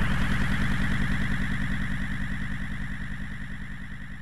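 Synthesized intro logo sound effect: a heavy, rapidly pulsing low rumble with a bright buzzing layer above it, held steady and slowly fading.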